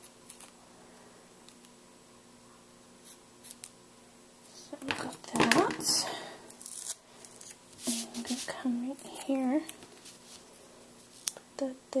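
Paper and washi tape being handled on a cutting mat: a few light clicks, then a loud rustling scrape about five seconds in. Later a woman's voice murmurs or hums briefly without clear words.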